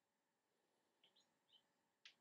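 Near silence: room tone, with a few faint, short high chirps about a second in.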